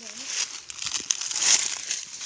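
Dry fallen leaves on a forest floor rustling and crunching as they are disturbed close to the microphone. The crackling swells about half a second in and is loudest about one and a half seconds in.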